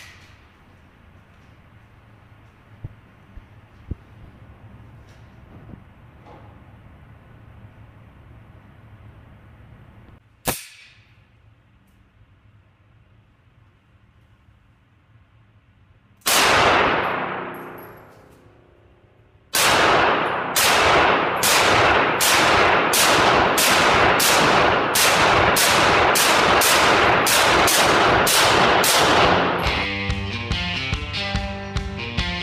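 A Beretta 92FS 9mm pistol firing in an indoor range. There is a sharp crack about a third of the way in, then a single shot with a long echoing tail past the halfway point. For the last ten seconds comes a rapid string of shots, about two a second.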